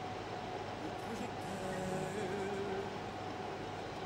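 Steady background hum in a small room, with faint wavering tones from a distant voice about one and a half to two and a half seconds in.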